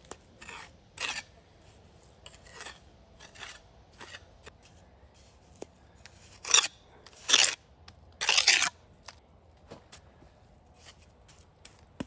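Steel trowel scraping mortar across fieldstone. A string of short scrapes, with three louder, longer strokes a little past the middle.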